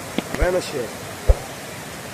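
Water pouring over a concrete dam spillway into the basin below, a steady rushing roar of a dam full and overflowing. A short dull thump sounds just over a second in.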